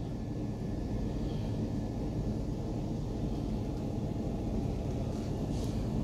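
Diesel engine of a Neoplan Skyliner double-deck coach idling steadily, heard as a low rumble from inside the driver's cab.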